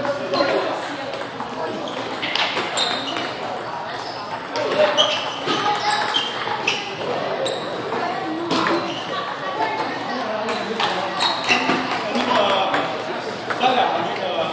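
Table tennis ball being struck and bouncing on the table, heard as scattered sharp clicks, with people talking in the hall.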